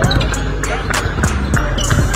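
Basketballs bouncing repeatedly on a hardwood gym floor, with music and voices in the background.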